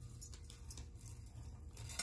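Faint handling noise of a gunmetal link-chain necklace being lifted off a marble tabletop: light scattered clinks and scrapes of the metal links, over a low steady hum.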